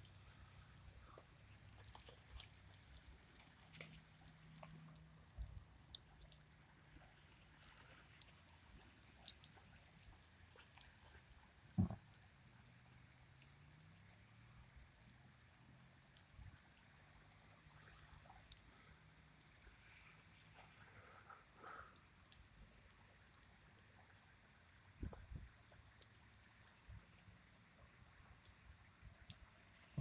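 Near silence with faint, scattered raindrop ticks and drips of steady rain. A single soft knock stands out about twelve seconds in, and a weaker one near twenty-five seconds.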